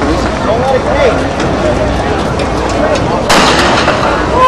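Starting pistol fired once, a sudden sharp crack about three seconds in that signals the start of a sprint race. Spectators' voices are heard around it.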